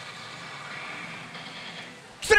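Steady din of a pachinko parlour: the machines running and balls rattling, with a faint higher tone from a machine coming in about halfway through.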